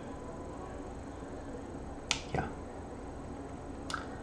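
Quiet room tone with two short sharp clicks just after halfway, about a quarter second apart, and a fainter click near the end.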